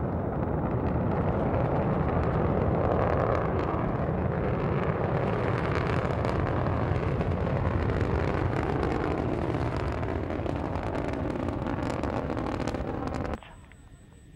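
Soyuz rocket's engines during ascent after liftoff: a steady, deep rumble of noise with some crackle, cutting off suddenly near the end.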